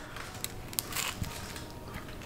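A person biting into and chewing a slice of pizza, with a scatter of faint crackles from the bite and the chewing.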